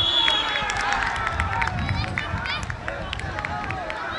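Referee's whistle blown once in a short, steady blast right at the start, stopping play for a foul, followed by players and spectators calling out.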